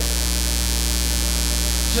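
Steady electrical mains hum in the audio feed, a low tone with a few fainter higher tones above it.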